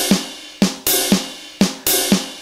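Built-in drum-machine beat of the NUX Mighty Air's metronome: a drum-kit pattern of kick, snare and hi-hat/cymbal at 119 BPM, with hits about every half second and quicker ones between.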